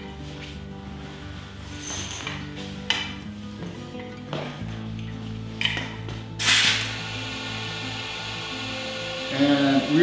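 Leak-down tester and air hose being handled, with a few small clicks of metal fittings, then a short, loud hiss of compressed air about six and a half seconds in as the air line is coupled to the tester. Steady background music plays underneath.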